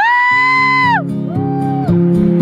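A loud, high-pitched cheering whoop from a person, held about a second and falling off, then a shorter second whoop. Acoustic guitar music comes in underneath.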